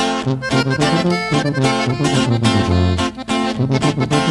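Instrumental intro of a norteño corrido: a button accordion plays the melody over a bass line and strummed guitar in a steady, bouncing beat.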